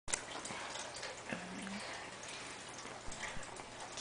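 Faint small clicks and rustles as a toddler's hand grabs rice from a plate, with a brief low hum about a second and a half in.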